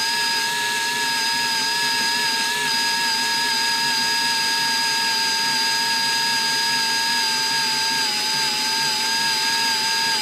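Electric drill running steadily under load as its bit drills out a broken-off heat riser bolt in a manifold, a constant whine that sags slightly in pitch late on as the bit bites harder.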